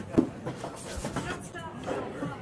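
People's voices talking in the background, with one sharp knock just after the start.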